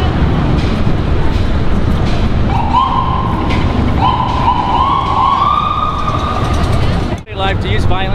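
A distant siren wailing, rising slowly in pitch in two long sweeps, over a steady low rumble of outdoor noise. It breaks off at a cut about seven seconds in.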